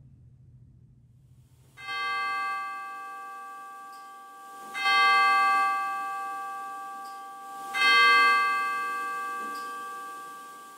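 A bell struck three times, about three seconds apart, each strike ringing on and slowly fading.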